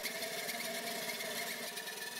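Saito FA-40 four-stroke glow model engine running steadily at its minimum speed, throttled down to about 2,400 rpm, while driving a small DC motor as a generator.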